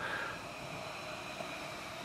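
Faint, steady hiss of a Mashems Crack'Ems squishy unicorn toy inflating inside its plastic egg after the plunger is pressed.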